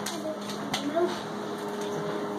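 Faint murmured voice sounds over a steady hum of room noise, with one sharp click about three quarters of a second in.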